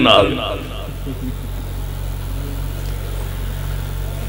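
A man's amplified voice trails off with a short echo, then a steady low electrical hum from the public-address sound system.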